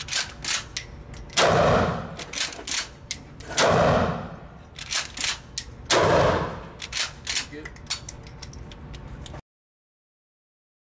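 Mossberg 590S Shockwave 12-gauge pump shotgun fired three times, about two seconds apart, each blast ringing on in the concrete indoor range, with shorter sharp clacks between shots as the pump action is worked. The sound cuts off abruptly near the end.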